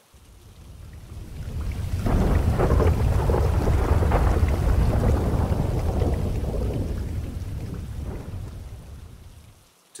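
Thunderstorm sound effect: a long rolling rumble of thunder over rain. It swells up over about two seconds, holds, then slowly fades out near the end.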